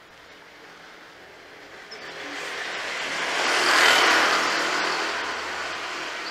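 A car passing close by in a narrow street: its sound swells from about two seconds in, is loudest about four seconds in, then fades away.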